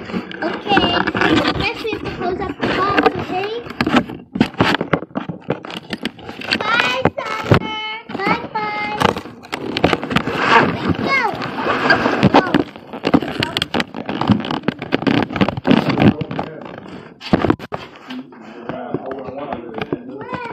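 Children's voices talking, too fast or muffled to make out, with a high held squeal-like stretch near the middle and many short clicks and knocks throughout.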